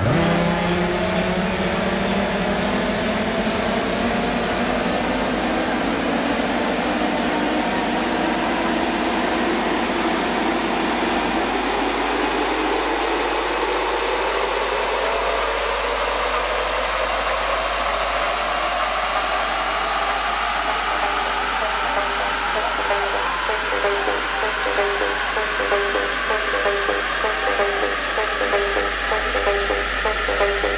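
Electronic dance music from a DJ set in a long build-up: a synth riser climbs steadily in pitch the whole time. The bass drops out about eleven seconds in, and a fast repeating rhythm comes in over the last several seconds, building towards a drop.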